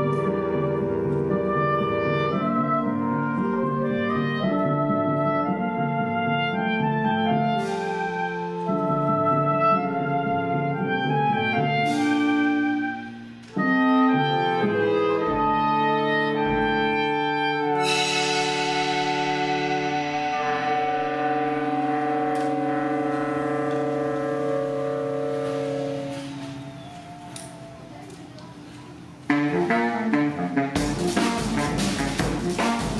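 Saxophone quartet (soprano, alto, tenor and baritone saxophones) playing held, shifting chords over a drum set, with cymbal strokes that ring out three times. The chord thins and grows quieter over the last few seconds, then a loud full entry comes in just before the end.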